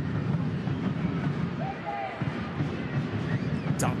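Stadium crowd noise at a soccer match: a steady murmur of many voices, with a single shouted call from the crowd or field about two seconds in.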